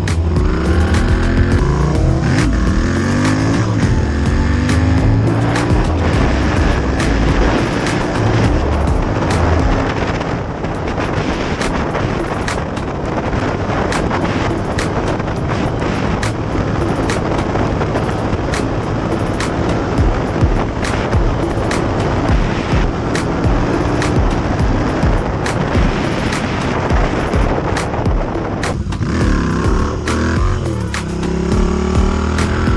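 Motorcycle engine running at road speed under heavy wind rush on the microphone, its pitch sweeping up and down near the start and again near the end as the revs change. Background music plays along with it.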